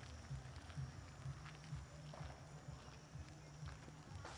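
Faint footsteps and low, irregular thuds of a handheld camcorder being carried while walking.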